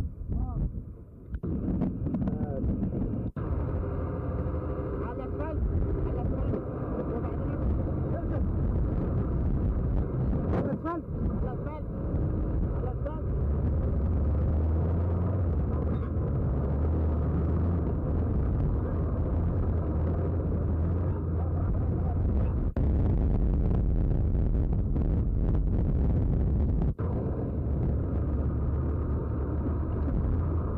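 Heavy military truck engines running, a steady low rumble throughout. Voices are heard briefly over it in the first half.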